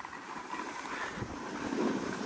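Snowboard sliding and scraping over firm snow, mixed with wind on the microphone, getting a little louder toward the end.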